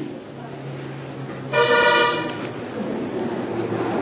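A vehicle horn sounds once, a single steady blast lasting just under a second about halfway through.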